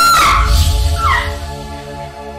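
A woman's high, held scream of terror that breaks off and falls away shortly after the start, then a short falling cry about a second in. Underneath runs a film score of sustained low drones with a deep boom.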